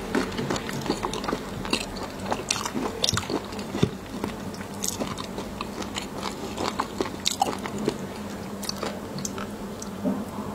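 Close-miked chewing of raw shrimp with sauce and fish roe, heard as many irregular sharp clicks and crunches.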